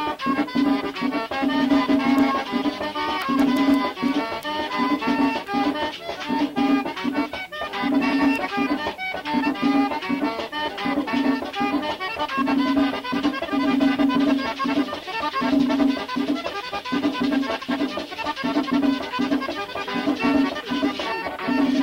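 Merengue típico played as a pambiche: a button accordion carrying the melody over a steady, driving percussion beat.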